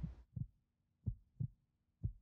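Faint heartbeat: soft, low thumps in lub-dub pairs, about one beat a second, with silence between them.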